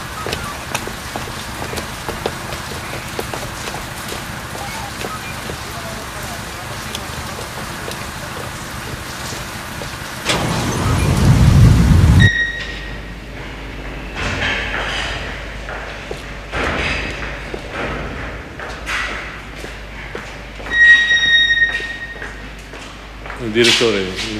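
Steady heavy rain on a wet street, then a loud low rumble that swells for about two seconds and cuts off abruptly. After that come scattered knocks and a few brief high steady tones.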